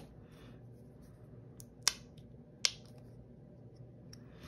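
Plastic flip-top cap of a small acrylic craft-paint bottle being handled and snapped open: a few sharp clicks in the middle, the two loudest a little under a second apart, over a faint low hum.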